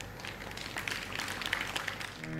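Faint scattered applause, many irregular claps at the close of a talk.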